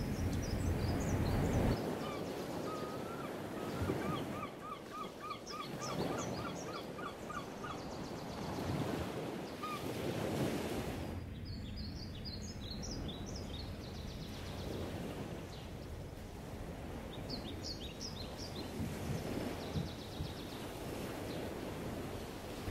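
Birds calling outdoors: a run of about a dozen quick repeated notes early on, and clusters of high chirps several times, over a steady rush of wind-like outdoor noise.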